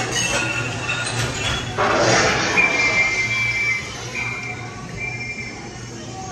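Mr. Toad's Wild Ride dark-ride car running along its track amid the ride's show audio. A sudden loud noisy burst comes about two seconds in, then brief high squealing tones over a steady low rumble.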